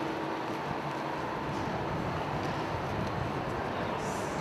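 Steady ambient rumble and hiss of a large public space, with a faint steady hum; a low tone fades out about half a second in.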